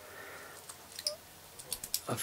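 Faint clicks of small plastic servo-lead plugs being handled and unplugged at a receiver's pin header: a few light ticks about a second in and again near the end.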